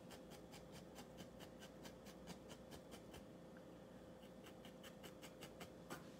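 Felting needle jabbing repeatedly into a wool puppy figure, a quick, even run of faint soft pokes, several a second, firming up wool that is still squishy.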